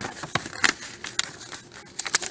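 A folded glossy paper sheet being unfolded and handled: irregular paper crinkling and crackling, with a few sharper snaps.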